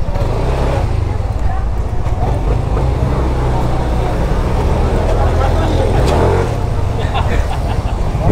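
A Yamaha NMAX scooter's single-cylinder engine running at low speed as the scooter moves off slowly, a steady low drone.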